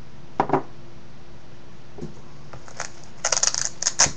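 Gear handled on a wooden tabletop: a short knock about half a second in, then a quick run of crackling clicks near the end as a nylon multi-tool pouch is picked up, ending in one sharp louder click.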